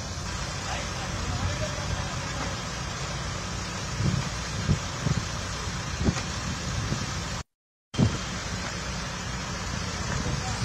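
Steady low rumble of diesel construction machinery (backhoe loader and crane) running on a building site, with a few short knocks. The sound cuts out completely for about half a second about three-quarters of the way through.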